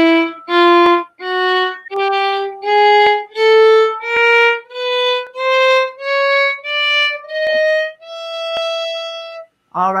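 Violin playing a one-octave ascending chromatic scale from E to E, thirteen separately bowed notes each a semitone higher, with the top E held longer near the end.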